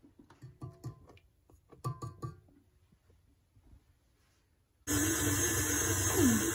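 Light taps and clicks of flour being scooped into a steel mixing bowl, then about five seconds in a stand mixer switches on and runs loudly and steadily, its dough hook kneading the dough.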